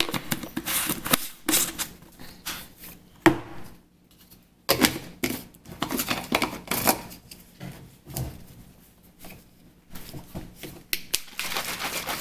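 Plastic supplement tub and shaker bottle being handled in a series of short noisy bursts: lids closed and clicked on, then the shaker bottle shaken to mix a pre-workout and amino drink.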